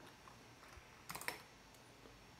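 A few quick keystrokes on a computer keyboard, bunched together a little past a second in, with a couple of fainter clicks before them over faint room tone.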